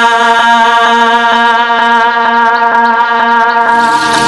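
Score music: a held droning chord that pulses evenly, with no bass underneath.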